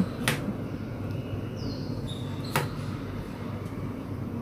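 A wide kitchen knife cutting through winter melon and knocking on a plastic cutting board: two sharp chops, about two seconds apart.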